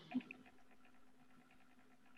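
Near silence on a video call: a faint steady hum of line noise, with one short soft sound just after the start.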